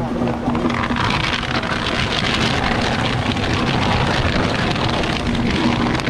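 Large wooden bonfire crackling densely as it burns, over a heavy low rumble of wind on the microphone. A steady low tone fades out about a second in and returns near the end.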